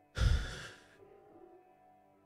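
A man's heavy, exasperated sigh: one short, loud exhale that blows on the close microphone, dying away within about a second. Faint background music runs underneath.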